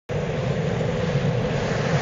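Galac POD mini longboard's urethane wheels rolling on asphalt: a steady rumble with wind on the microphone, starting suddenly.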